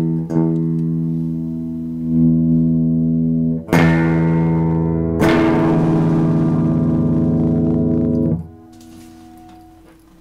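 Electric guitar chords played through an overdriven power amplifier, with the Sochor DRX85 delay/reverb in the chain. One chord rings out, a new one is struck almost four seconds in and another just after five seconds, held until it stops about eight seconds in, leaving only a faint tone.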